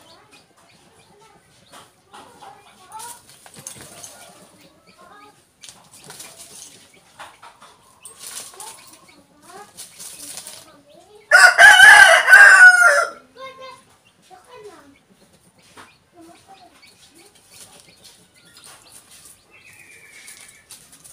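A rooster crows once, a loud call of about two seconds in the middle.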